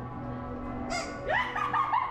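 Steady bell-like tones, then about a second in a sudden sharp noise followed by a run of short, high-pitched vocal cries from a startled person.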